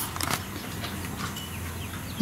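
Handling noise as the camera is moved: a few light clicks about a quarter of a second in, then faint rustling over a low steady hum.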